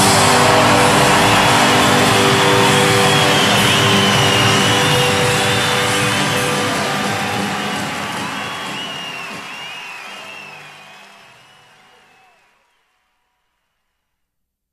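Live rock band ringing out its final chord under a cheering crowd, the whole mix fading away to silence about twelve seconds in.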